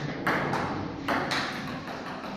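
Table tennis ball clicking off paddles and the table during a rally: three sharp clicks, each with a short ring of hall echo.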